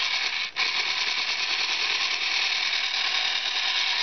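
Small electric stand mixer running, its beater turning through a bowl of mashed cupcake and milk with a steady motor whine. It cuts out for a moment about half a second in, then runs on.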